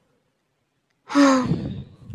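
A woman's voice giving a loud, breathy exclamation that falls in pitch, like an exasperated sigh, starting about a second in after a moment of quiet.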